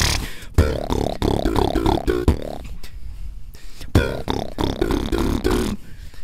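Beatboxing into handheld microphones: mouth-made drum hits with short, bending pitched vocal sounds, in two phrases with a brief pause about halfway.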